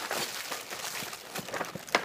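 Hands rummaging through a cardboard box packed with plastic-wrapped snacks: wrappers crinkling and rustling with many quick clicks, and a sharper click near the end.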